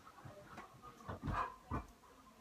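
A pet dog moving and making faint sounds, with two soft thumps in the second half.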